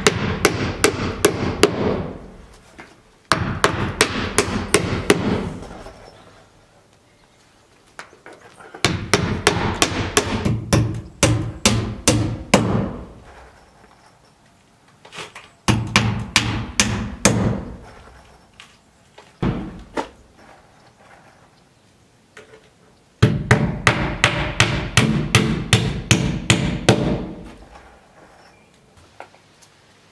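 Claw hammer driving nails through a window's nailing flange into the wall framing: runs of quick, sharp blows, a few a second, each run setting a nail, with short pauses between nails.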